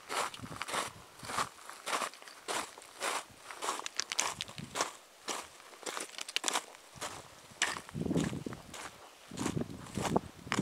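Footsteps of a hiker walking on a stony, gravelly track, about two steps a second, beginning suddenly at the start. There is a low rumble on the microphone about eight seconds in.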